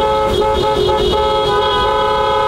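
Car horns held in one long, steady blast, two pitches sounding together as a chord: a motorcade honking in celebration.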